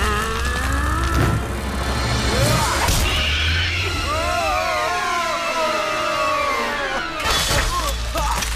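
Cartoon action-scene soundtrack: music mixed with crash and impact sound effects. There is a sharp hit about three seconds in, wavering gliding tones in the middle, and a cluster of crashing impacts near the end.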